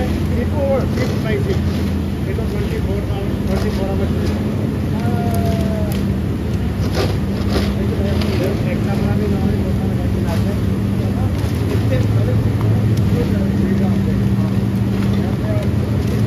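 Steady factory machinery drone with a constant low hum, with scattered light clatter as scraps of thin wood veneer are handled and thrown into a wood-fired boiler's furnace.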